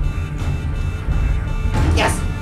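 TV series soundtrack playing: a steady, low droning score with a short noisy burst near the end.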